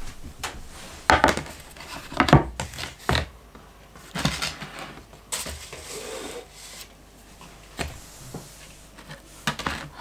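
Scattered knocks, clatter and rubbing of a wooden pizza board and a plate with a pizza cutter being set down and shifted on a wooden table.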